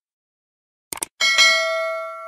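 Subscribe-animation sound effects: two quick clicks just before a second in, then a notification bell chime that rings on with several clear tones and slowly fades.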